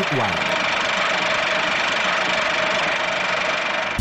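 A steady, loud hissing drone with two faint held tones underneath, stopping abruptly right at the end.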